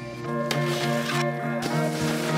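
Background music with steady held tones and a few sharp hits.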